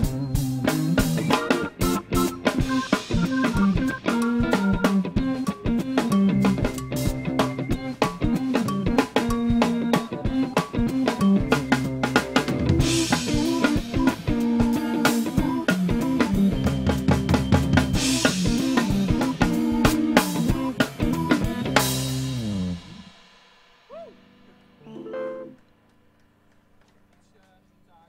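Live band playing with a full drum kit, snare and bass drum driving a steady beat under bass and guitar, stopping abruptly about three-quarters of the way through. After the stop come a couple of brief faint sounds and a low steady hum.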